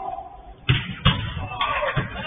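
A football being kicked and struck in a goalmouth scramble: two sharp thuds about half a second apart, then a lighter third one, with players shouting.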